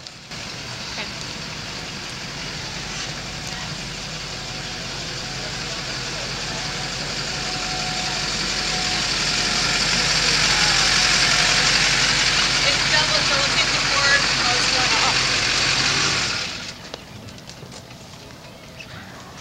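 A motor engine running close by: a low hum under a loud hiss, growing louder through the middle and then cutting off abruptly near the end.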